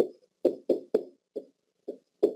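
Pen tapping and knocking against an interactive whiteboard as letters are written: a quick, uneven series of about seven short knocks.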